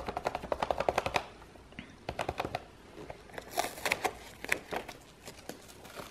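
Stencil brush pouncing paint through a stencil onto a lampshade: a quick run of dry taps, about ten a second, in the first second, then shorter scattered bursts of taps.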